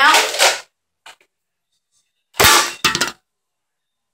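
Nerf N-Strike Longshot CS-6 spring blaster firing a foam dart point-blank into an empty aluminium seltzer can: a loud sudden crack with a short metallic ring, followed about half a second later by a second knock.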